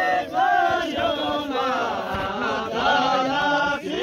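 A group of men singing a Kinnauri folk song together in chorus, unaccompanied, with long held, wavering notes and brief breaths between phrases.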